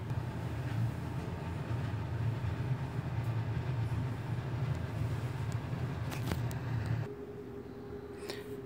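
Steady low drone of room noise, with a few sharp clicks of a hotel room door's lever handle and latch around six seconds in. The drone cuts off suddenly about a second later, leaving a fainter, higher steady hum.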